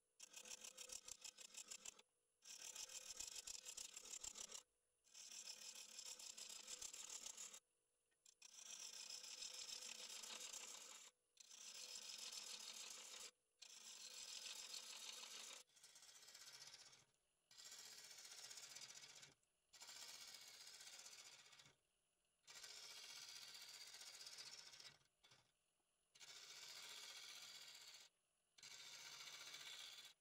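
Gouge cutting a spinning cherry blank on a wood lathe, a hissing shaving sound in about a dozen passes of one to three seconds each, broken by short near-silent breaks.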